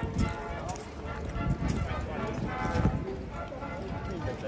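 Crowd chatter, with the irregular clop of a cavalry horse's hooves as it shifts its feet.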